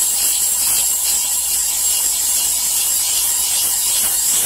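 Bench grinder's abrasive wheel grinding the steel of a sawmill bandsaw blade, a steady, high, hissing grind over the faint hum of the spinning wheel. This is the blade being ground as part of preparing it for joining.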